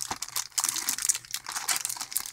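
Clear plastic packaging of double-sided tape rolls crinkling as hands handle and lift the packs, an uneven run of sharp crackles.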